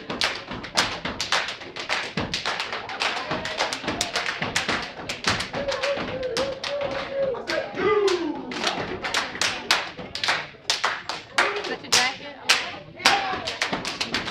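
Step team stepping: a fast, rhythmic run of foot stomps and hand claps, several sharp strikes a second.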